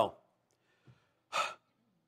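A man's single short, sharp breath into a close microphone, about a second and a half in.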